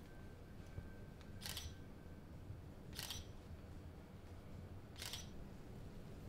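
DSLR camera shutter firing three times, about a second and a half to two seconds apart, each a short sharp click, faint over a low steady room hum.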